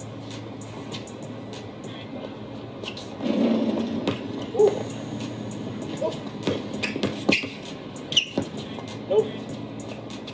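Audio from a streetball video: background music and players' voices, with a basketball being dribbled on an outdoor court, heard as several sharp knocks in the second half.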